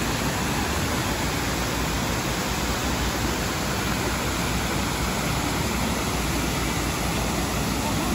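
Water of the Friendship of Peoples fountain's many jets falling into its basin: a steady, even rush of splashing water.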